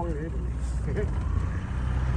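A boat motor running with a steady low hum as the small boat cruises, with a few words of Thai speech over it.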